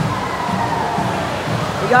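Steady rushing-water din of an indoor water park, with people's voices mixed in.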